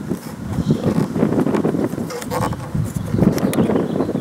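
Wind buffeting the microphone, a low uneven rumble, with a few faint clicks.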